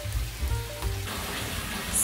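Background music, with the hiss of water pouring from a bathtub tap into the tub.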